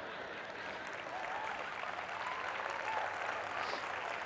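Audience applauding steadily, with a few voices rising out of the clapping.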